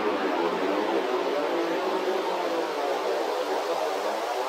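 Ambient electronic music: a steady wash of synthesized noise over a sustained low drone, with no beat.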